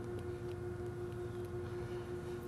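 A steady hum holding one constant pitch over a faint low rumble of background noise.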